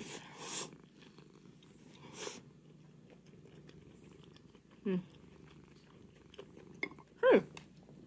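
Domestic cat purring steadily, close to the microphone. A short noodle slurp comes at the start.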